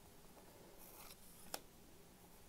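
Faint rustle of a baseball card being slid off a stack of cards, then a single sharp click of the card about one and a half seconds in.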